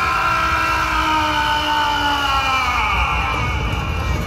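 A sound effect from a Durga Puja pandal's theme show, played over loudspeakers: a held chord of several tones that slides slowly down in pitch for about three seconds and fades near the end. It runs over a steady low crowd rumble.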